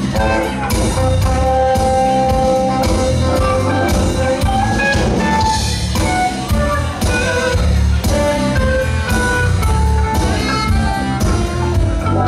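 A live band playing an instrumental jazz-blues groove: a drum kit keeps a steady beat under electric guitar and bass, with long held melody notes on top.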